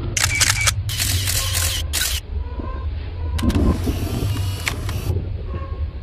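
Analog FPV video-receiver static: bursts of loud hiss that switch on and off abruptly as the drone's radio signal breaks up, four bursts in all, the last and longest ending about a second before the end. A steady low hum runs underneath.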